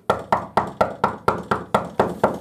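Rapid, steady knocking on a closed door, about four knocks a second.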